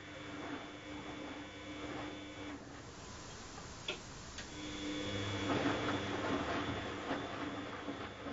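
Bosch Logixx WFT2800 washer-dryer's drum motor whining steadily as it tumbles the wash load. It stops about two and a half seconds in, two light clicks follow, then the motor starts again with a louder swish of water and laundry in the drum: the pause-and-restart of the main-wash tumble.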